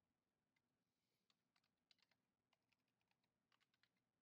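Very faint computer keyboard typing: a scattering of quick keystrokes in uneven clusters, barely above near silence, as code is typed into the editor.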